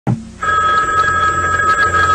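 A short sharp hit at the very start, then a rotary desk telephone's bell ringing steadily.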